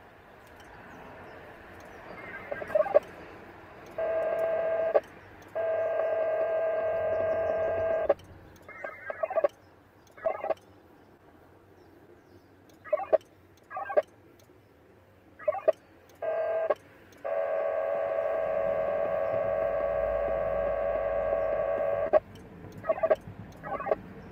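VARA FM digital modem signal of a Winlink radio session: short bursts of tones go back and forth, with longer blocks of steady stacked tones, one of about four seconds with a brief break and one of about five seconds later. This is the connection being made and messages being downloaded.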